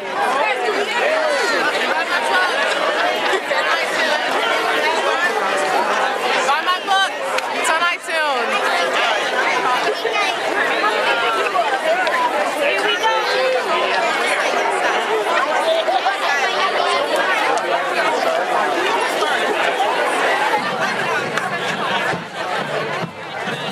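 A large crowd chattering: many voices talking over one another at once, with no single voice standing out.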